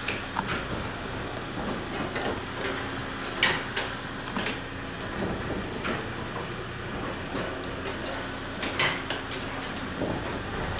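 Fortune cookie baking machine running with a low steady hum, with scattered sharp metal clicks and clinks as hot cookies are peeled off its griddle plates and folded.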